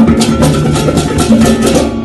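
Banyuwangi terbang (kuntulan) ensemble playing: frame drums and stick-beaten drums struck in a fast, even rhythm over a steady low drone.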